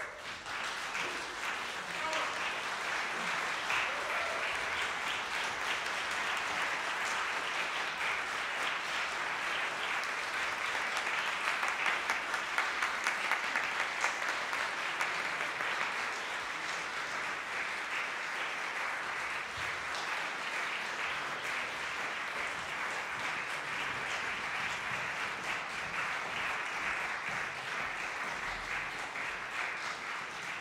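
Audience applauding, breaking out suddenly from silence and going on steadily, thinning slightly near the end.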